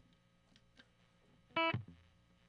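Near silence, then about one and a half seconds in a single short note is picked on a Stratocaster-style electric guitar and rings briefly.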